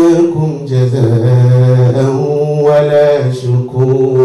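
A man's voice chanting in long, drawn-out melodic notes into a microphone, with a brief break near the end.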